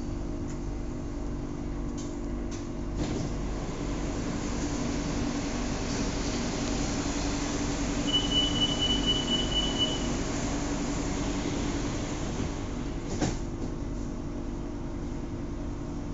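Bangkok BTS Skytrain car standing at a station: a steady electrical hum from the train's equipment, with a few light clicks. A high steady tone sounds for about two seconds midway.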